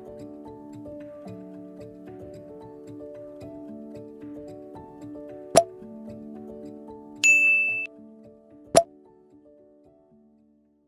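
Soft background music of plucked-sounding notes, overlaid with two sharp mouse-click sound effects about five and a half and nine seconds in and a bright notification-bell ding lasting over half a second between them. The music fades out near the end.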